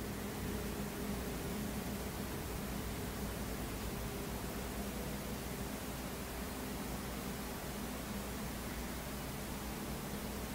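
Steady hiss with a faint low hum: the room tone and noise floor of a desk microphone, with nothing else happening.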